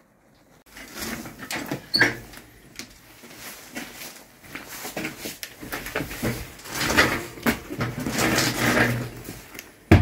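A bicycle lock being unlocked with a few sharp clicks, then the bicycle rattling and clattering as it is handled and wheeled backwards, the clatter louder and denser in the second half.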